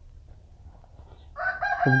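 A rooster crowing, starting about two-thirds of the way in and held on a steady high pitch, with a man's voice beginning at the very end.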